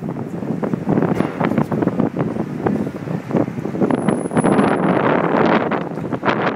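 Wind buffeting the microphone in loud, gusty rumbling surges, over a background of street noise.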